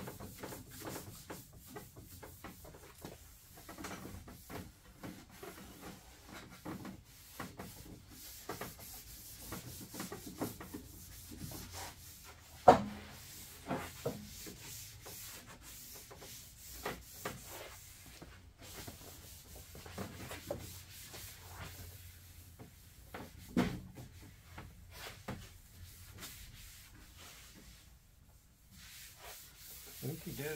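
Cloth shop towel rubbing and wiping across a riding mower's hood in short, irregular strokes, cleaning the old finish with prep solvent before painting. Two sharp knocks stand out, the loudest about 13 seconds in and another about 24 seconds in.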